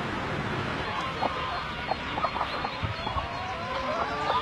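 A flock of brown free-range laying hens clucking, with scattered short clucks and a couple of longer drawn-out calls.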